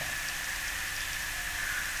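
Steady background hiss with a faint, steady high-pitched tone running through it, in a pause between spoken sentences.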